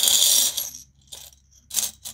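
Canadian coins jingling and clinking in a glass jar as it is tilted and shaken to tip change out: a loud jangle at the start, then a few separate clinks, a stronger one near the end.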